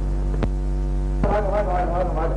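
Loud, steady electrical mains hum on an old film soundtrack. A single click comes just before halfway, and a voice comes in a little past the middle.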